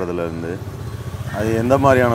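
A man's voice talking in short phrases, with a gap of about a second in the middle, over a steady low hum.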